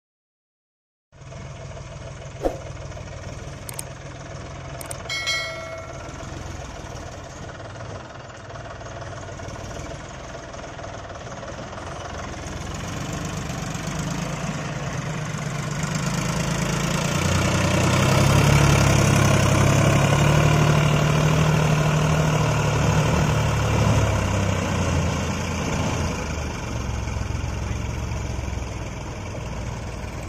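Combine harvester engine running, growing louder and heavier through the middle and easing again near the end. There is a brief click early on and a short pitched squeak a few seconds in.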